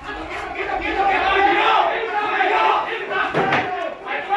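Several men shouting commands at once, loud and overlapping: officers yelling as they burst into a house in a drug raid.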